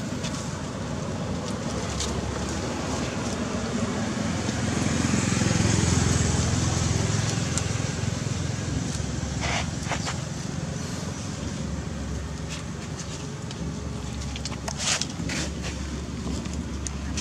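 Steady outdoor background noise with a low rumble that swells and fades about halfway through, and a few short sharp sounds near the end.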